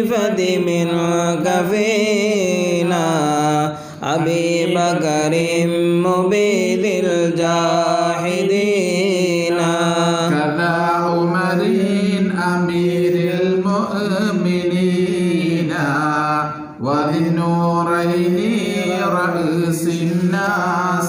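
Melodic Mawlid chanting of salutations to the Prophet, drawn out in long held, wavering notes with two brief pauses, about four seconds in and again near seventeen seconds.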